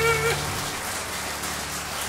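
A tenor's final held note with vibrato stops just after the start, and the pianos' low chord dies away within the first second. Audience applause follows as a dense patter of clapping.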